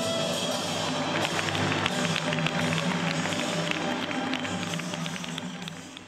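Stage-show music: sustained instrumental tones with fast, sharp percussion taps over them, fading out near the end.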